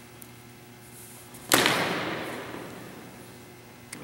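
A single loud crack of a steel practice broadsword striking, about one and a half seconds in, ringing and fading away over about two seconds.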